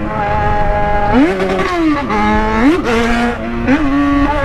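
Yamaha XJ6's 600 cc inline-four engine revving hard under acceleration, its pitch climbing and then dropping twice. The rider calls the sound a boom.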